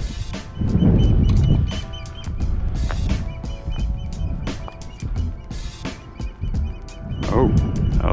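Background instrumental music with a drum beat: kick and snare hits over steady held tones.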